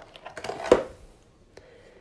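Clear plastic packaging rustling and clicking as a small USB charger is pulled out of it by hand, with a sharp snap of plastic a little under a second in.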